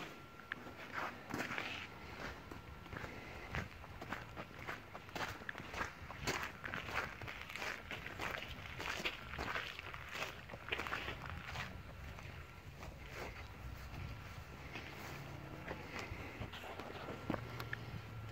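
Footsteps of a person walking on concrete, a faint run of uneven steps and scuffs.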